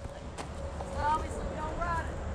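Faint, distant voices with a steady low outdoor rumble, and a single light click about half a second in.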